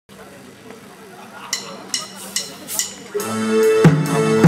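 A rock band's song begins: four evenly spaced clicks, a drummer's count-in, then guitars, bass, keyboard and drums come in together loudly about three seconds in.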